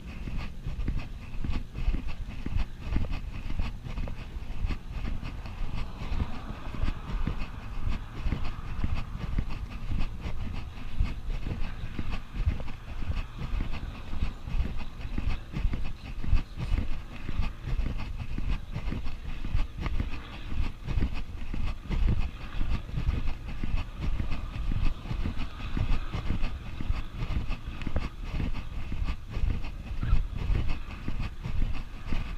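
Wind buffeting an action camera's microphone as it is carried on foot: a continuous low rumble broken by rapid, irregular thumps and knocks.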